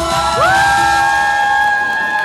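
A dance song's last bars with its beat still going, as audience members let out long high whoops that rise in pitch about half a second in and hold.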